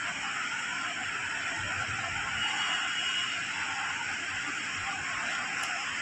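Steady background hiss, even throughout, with a faint thin tone in it for about a second near the middle.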